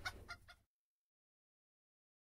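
Near silence: a few faint, short repeated sounds die away within the first half-second, then the track ends in dead silence.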